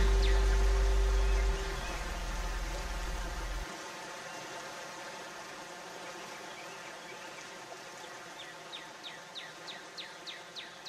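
The last held notes of the instrumental soundtrack die away in the first few seconds, leaving a steady outdoor background. Near the end comes a run of short, falling chirps, about three a second.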